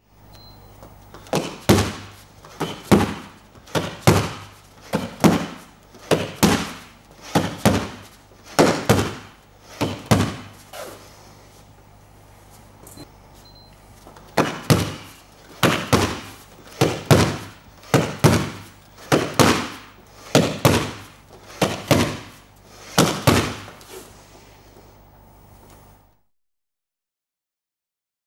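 Boxing gloves smacking into hand-held focus mitts: a run of punches about one a second, a pause of about three seconds, then a second run at the same pace.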